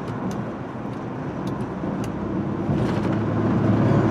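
Cabin noise of a 2002 Chrysler Sebring convertible cruising at about 50 mph with the top up: a steady low hum of road noise and the 2.7-litre V6, with only light wind noise for a convertible. It grows a little louder near the end.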